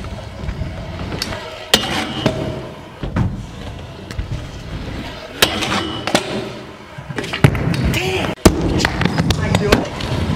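Stunt scooter wheels rolling across skatepark ramps and floor, a continuous rumble broken by several sharp clacks as the deck and wheels hit the surface.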